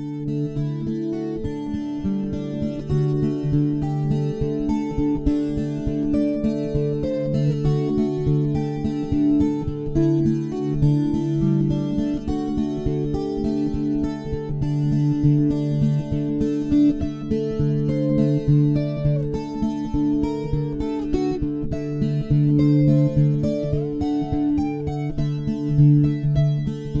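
Background music led by a plucked acoustic guitar, steady chords with a continuous rhythm of picked notes.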